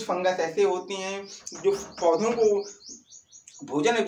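A bird chirping: a quick run of short high chirps, about six a second, from about a second and a half in until about three seconds in, over a man's speaking voice.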